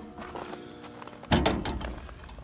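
Heavy steel firebox door of an outdoor wood boiler swung shut against its rope seal and newly tightened latch. It lands with a sudden clunk a little past halfway through, followed by a low rumbling scrape of metal.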